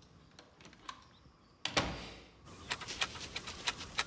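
Quiet room tone, then about halfway a sudden loud rush that fades within a second. Outdoor ambience follows, with birds giving rapid short high chirps and clicks over a soft hiss.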